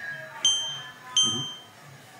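A short, high electronic ding sounds twice, about three quarters of a second apart, each ringing out briefly.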